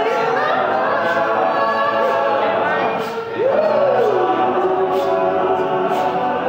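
Men's a cappella group singing: a lead singer at the microphone over sustained backing chords from the group. About three seconds in, a voice glides up and then back down in one long slide.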